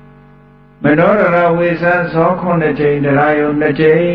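A man's voice chanting a melodic Buddhist recitation. It comes in loudly about a second in, after a faint held tone has faded away.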